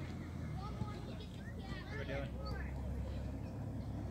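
Faint, distant voices chattering, with several people talking over one another, over a steady low rumble.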